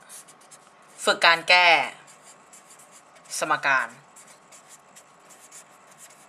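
Handwriting strokes: a run of short, quick scratches that keeps going through the whole stretch. Two brief murmured words break in about a second in and again about three and a half seconds in.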